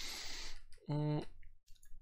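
A breathy exhale, then a short hummed "mm" from a voice about a second in. A light click comes from the computer keys as the cursor is moved to the end of the code line.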